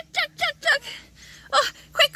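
A high-pitched child's voice making short vocal bursts in quick succession, with a breathy gasp about a second in.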